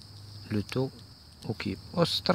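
A man's voice saying a few short, indistinct syllables, over a steady high-pitched whine in the background.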